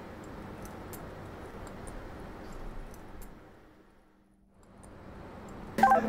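Faint steady rush of wind during a fast cable-guided drop off the Auckland Sky Tower. It fades away about four seconds in and comes back just before the end.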